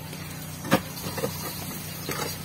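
Wooden formwork being knocked and pried loose from a concrete beam: one sharp knock just under a second in, then a couple of lighter taps, over a steady low hum.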